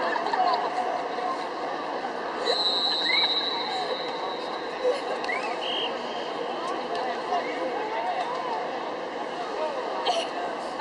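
Crowd chatter: many people talking at once, no single voice standing out. A high steady tone lasts over a second about two and a half seconds in, and a shorter one comes a few seconds later.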